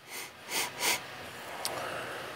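A man sniffing at the neck of a beer bottle: three short sniffs within the first second, then a faint click.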